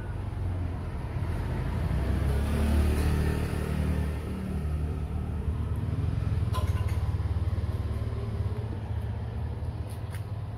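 A motor vehicle's engine running close by, a steady low rumble that swells about two to three seconds in.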